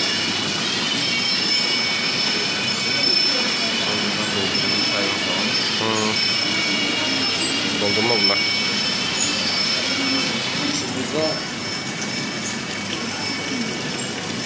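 Indistinct voices of people talking in the background, a few short bits of speech rising out of a steady noisy hum that carries several faint, steady high tones.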